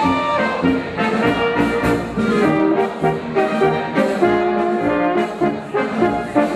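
Brass band playing a folk dance tune, the brass carrying a melody of held notes that change every fraction of a second.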